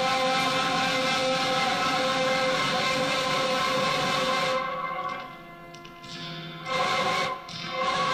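Electric guitar played through a delay effect, sustained notes layering into a ringing wash. About four and a half seconds in it dies away, then swells back up twice.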